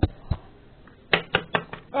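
Toy figure knocked against a wooden tabletop: two sharp taps early on, then a quick run of about five taps in the second half.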